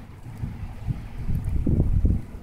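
Wind buffeting the microphone: a low rumble that gusts louder in the second half.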